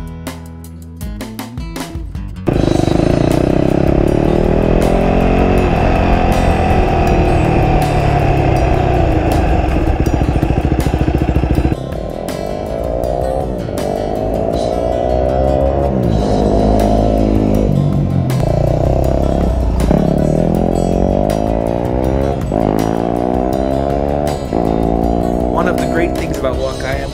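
A Yamaha WR250R's single-cylinder engine, loud from a couple of seconds in. At first it runs steadily, then about halfway through it revs up and drops back again and again as the bike accelerates and shifts up through the gears.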